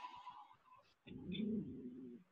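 A low cooing bird call lasting about a second, starting midway, after street noise from a passing car fades out in the first half second.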